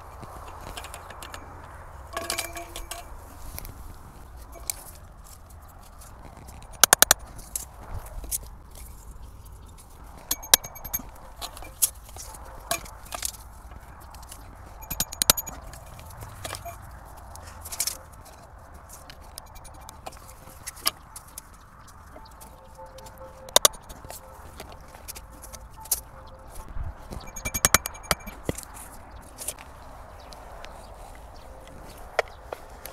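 Thin metal stakes clinking and knocking against each other and into the ground, short sharp metallic hits with a brief ring, coming irregularly as they are set in one after another.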